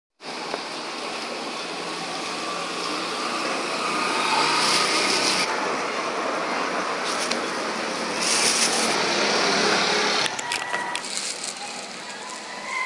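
A steady rushing noise that drops away suddenly near the end, with two short spells of plastic bag crinkling in the middle and a few light clicks after the drop.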